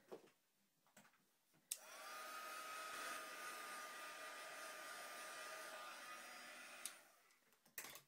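Craft heat tool (embossing heat gun) switched on with a click about two seconds in. Its fan spins up quickly to a steady hiss with a high whine, then is switched off about seven seconds in and winds down. It is heat-setting wet acrylic paint.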